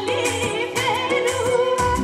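A woman singing live into a microphone over amplified backing of keyboard and percussion with a steady beat, heard through a PA system. A deeper bass beat comes in near the end.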